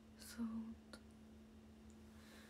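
Quiet room tone with a steady low hum; about a quarter second in, a short breathy whisper from a young woman, followed by a single faint click.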